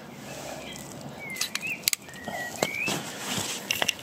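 A few short bird chirps in the middle, over a steady outdoor background, with several sharp light clicks scattered through.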